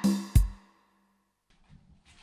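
Vault Caesar MK2 digital piano ending a jazz phrase: a last chord with a deep drum thud from its accompaniment, dying away within about half a second. Then near silence with only a faint soft noise near the end.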